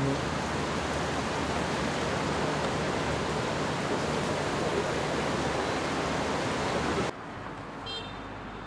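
A steady, even rushing noise that cuts off abruptly about seven seconds in.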